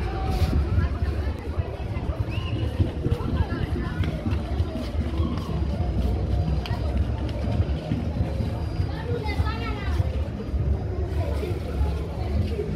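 Street-market hubbub: background voices talking over one another, with music playing.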